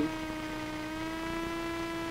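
Steady drone of the Jabiru UL-450's four-cylinder Jabiru 2200 engine and propeller, heard inside the cockpit on final approach: one even pitch with a long row of overtones.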